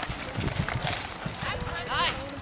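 Horse's hoofbeats on a dirt arena as it turns a barrel and breaks into a gallop, a run of low thumps, with people's voices over it.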